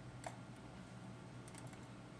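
A few faint clicks at a computer: one sharp click about a quarter second in and a small cluster of lighter clicks about a second and a half in, over a steady low hum of room or computer noise.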